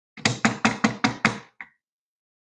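Rapid knocking: six sharp knocks at about five a second, followed by one fainter knock.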